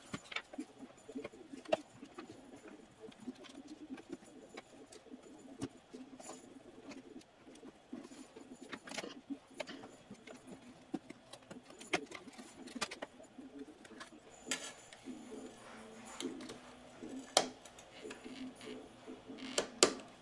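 A small pointed tool and fingers prying an adhesive-backed aluminium faceplate off a portable radio: faint scraping and rubbing with scattered sharp clicks and ticks, a few of them louder.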